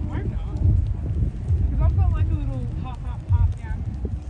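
Passers-by chatting as they walk, with footsteps falling unevenly underneath.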